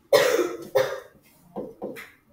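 A person coughing twice in quick succession, followed by a few short, softer sounds.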